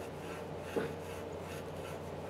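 Fine steel wool rubbing on a copper pipe, a faint, steady scrubbing as oxidation is cleaned off the pipe end before a compression valve goes on.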